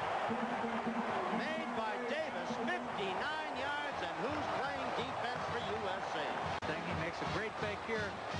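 Voices talking over a steady background din of stadium crowd noise, as heard in a television football broadcast.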